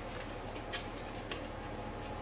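Baking powder shaken out of a paper sachet into a mixing bowl: a faint rustle with two or three soft ticks, over a steady low room hum.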